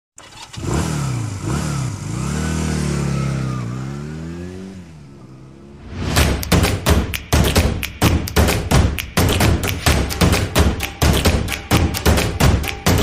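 A motorcycle engine revving, its pitch rising and falling several times before fading out. About six seconds in, music with a hard, fast drum beat starts.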